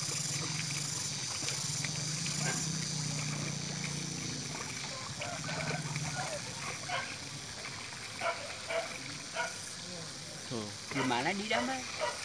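People talking outdoors, with the loudest voices near the end, over a steady low hum that fades out about six seconds in.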